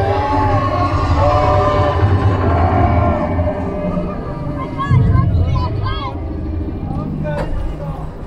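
Expedition Everest roller coaster train running along its track with a steady low rumble. People's voices and short rising-falling whoops sound over it about halfway through.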